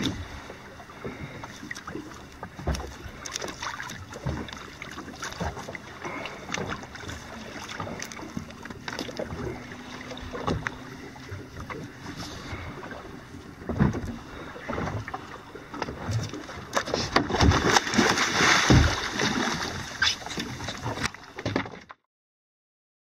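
Water splashing and knocking against a small boat's hull as a hooked small shark struggles alongside on a line, with wind on the microphone. Scattered knocks throughout, and a louder stretch of splashing near the end.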